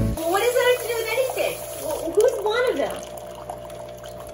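A person's voice for about the first three seconds, without clear words, then a faint steady trickle of coffee pouring from a single-serve brewer into a mug.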